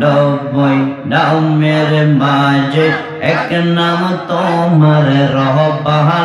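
A man's voice chanting zikir melodically into a microphone, holding long sung notes that step from one pitch to the next.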